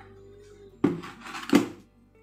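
Two hollow knocks, about a second in and again just over half a second later, from a plastic bucket being handled and set down, over faint steady background music.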